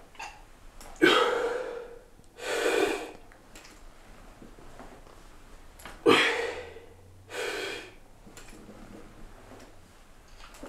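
A man breathing hard through a set of heavy Romanian deadlifts: a sharp, forceful exhale about a second in, then a drawn-in breath. The same pair repeats about five seconds later.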